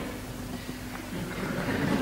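A short pause between spoken words: faint room ambience with a faint steady hum.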